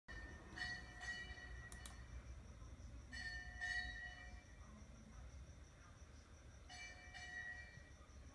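Faint bell-like chimes: a ringing tone struck twice in quick succession, repeated three times about three seconds apart, each dying away slowly. A faint steady high whine runs underneath.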